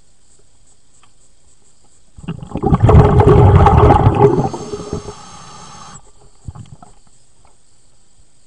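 Diver's exhaled air bubbling out underwater close to the microphone: a loud bubbling rush of about three seconds that starts about two seconds in and tails off by about six seconds.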